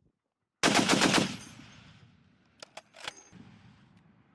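M2 .50-caliber heavy machine gun firing one short burst of about seven shots, starting just over half a second in, followed by a long rolling echo. Three fainter, sharper cracks come about two and a half seconds in.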